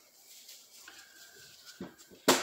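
Faint handling of a brake cylinder on a rag-covered workbench, with a single light knock near the end.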